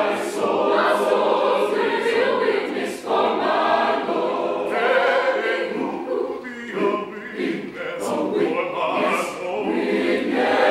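Large mixed choir singing a gospel spiritual in full harmony, with crisp hissing consonants cutting through now and then and brief dips in level about three and seven seconds in.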